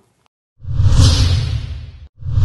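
A transition whoosh sound effect. After a brief silence it comes in about half a second in as a swelling rush of noise with a deep rumble underneath, then fades out.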